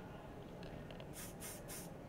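Aerosol hairspray can sprayed onto hair in three short bursts in quick succession, starting a little over a second in.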